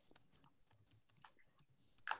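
Near silence with faint, irregular clicks of a computer keyboard being typed on, a few keystrokes a second.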